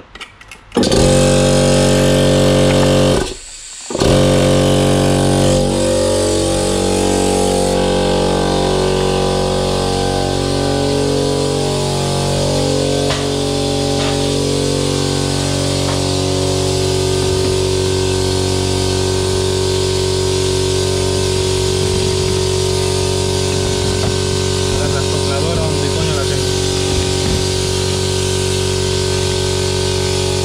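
Electric air compressor switched on about a second in, cutting out briefly and starting again, then running steadily and loud; its tone wavers for the first ten seconds or so before settling.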